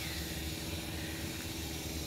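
Steady background noise: a low hum and hiss with a faint steady tone, unchanging throughout.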